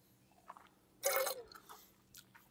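Wine taster spitting a mouthful of wine into a stainless steel spit cup: one short wet hiss about a second in, with faint mouth clicks around it.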